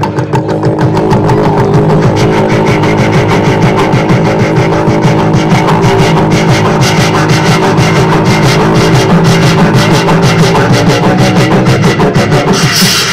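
Live beatboxing into a handheld microphone: a steady hummed bass tone held under a fast run of percussive mouth clicks and snares.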